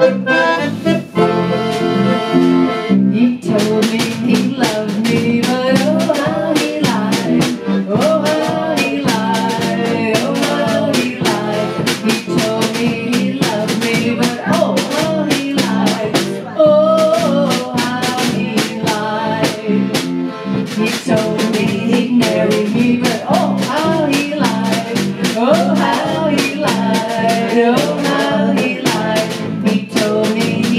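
Live polka band playing: a concertina opens alone with a short lead-in, then drums and electric bass guitar come in about three seconds in, keeping a steady polka beat under the concertina melody.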